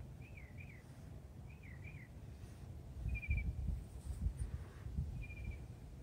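A bird calling faintly: two wavy, looping chirped phrases in the first two seconds, then two short trills later on, over a low rumble that comes and goes.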